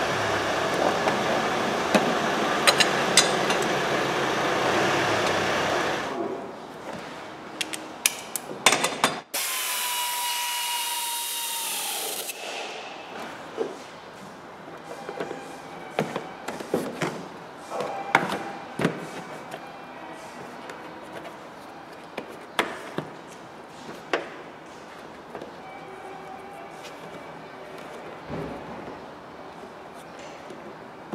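Plastic engine-bay cowl trim and covers being handled and clipped into place: a string of scattered clicks, knocks and scraping rubs. A loud steady noise fills the first six seconds, and a short whine falls away about twelve seconds in.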